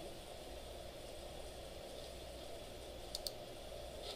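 Two quick computer mouse clicks, close together, about three seconds in, over a faint steady room hum.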